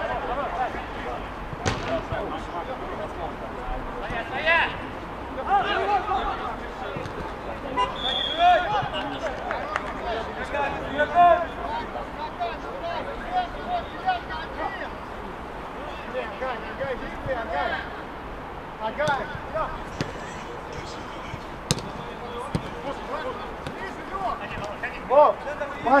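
Footballers' shouts and calls across an outdoor pitch, with a few sharp thuds of the ball being kicked.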